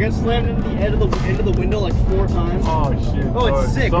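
A man talking over background music, with a steady low rumble of road noise inside a moving car's cabin.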